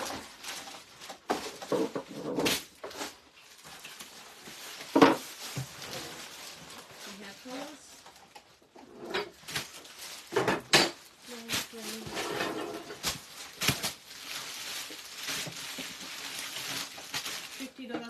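Clear plastic saree packaging crinkling and rustling as packed sarees are handled and opened, with scattered sharp crackles, the loudest about five seconds in.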